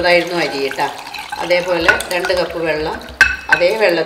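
A woman talking over kitchen handling sounds as water is poured from a bowl into a glass mixing bowl, with a sharp knock of dish against glass about three seconds in.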